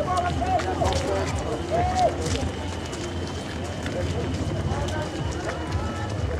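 Many runners' footsteps on a tarred road, with spectators' voices calling out unintelligibly throughout.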